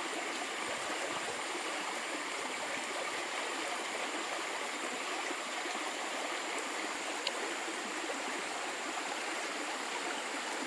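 Shallow, muddy stream running steadily: a continuous rush of flowing water.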